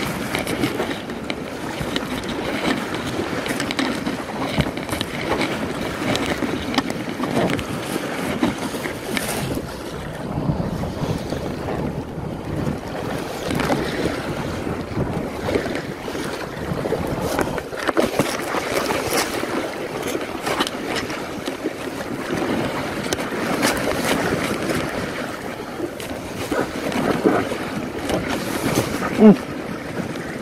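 Choppy lake water slapping and splashing against an inflatable packraft as it is paddled through whitecaps, with wind buffeting the microphone in a steady rush. Near the end the paddler gives a short 'mm'.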